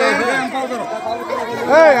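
Crowd chatter: several voices talking over one another, with one louder voice near the end.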